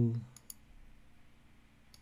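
Computer mouse button clicks: two quick clicks about half a second in and one more near the end, placing line points in CAD software.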